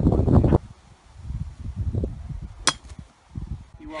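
Wind buffeting the microphone, cut off abruptly about half a second in. After it comes a quieter stretch with one sharp, short click past the middle.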